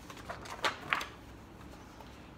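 Paper pages of a picture book rustling and flapping as they are turned, with a few short sharp rustles in the first second.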